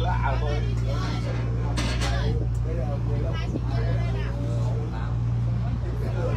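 Tour boat's engine running with a steady low drone, under voices talking.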